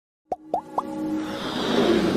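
Animated-logo intro sound design: three quick blips, each gliding up in pitch, then a riser of music and noise that swells steadily louder.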